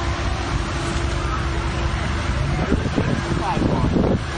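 Polaris Slingshot three-wheeler's engine running as it rolls slowly, a steady low rumble, with voices in the background in the second half.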